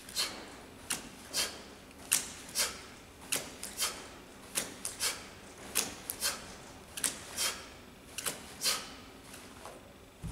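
Band-resisted kettlebell swings: short, sharp hissing bursts that come in pairs about every 1.2 seconds, one pair with each swing.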